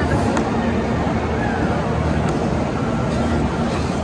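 Steady low rumble of air moving over a phone microphone as the skater glides across the ice, with people's voices faint in the background and a few light clicks.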